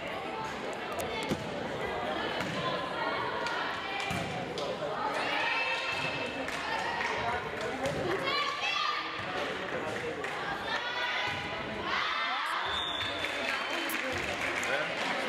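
Voices calling out and chattering in a reverberant gym during a volleyball rally, with sharp thuds of the volleyball being struck. Louder calls come about five, eight and eleven seconds in.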